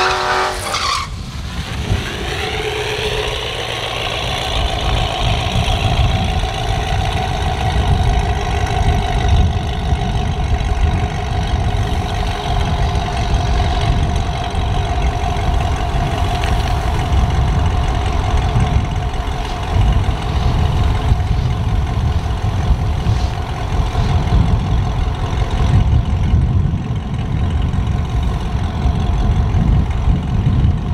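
Supercharged LSA V8 of a Chevy SS running at a slow idle with a rumble as the car creeps up to the start line. In the first few seconds a higher engine note slides down and fades.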